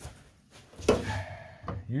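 A sharp metallic click about a second in, with a short ring after it, from handling the metal can of tung oil.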